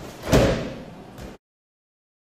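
A loud thud of a body landing on a tatami mat from a throw, with a short decaying tail, a third of a second in. A small knock follows, and then the sound cuts off abruptly into dead silence.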